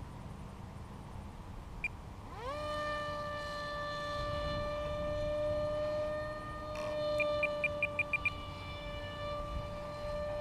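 Electric motor and propeller of a foam RC park jet, a Sukhoi PAK FA model, throttled up about two and a half seconds in: the whine rises quickly in pitch, then holds one steady tone. About seven seconds in, a quick run of seven short high beeps.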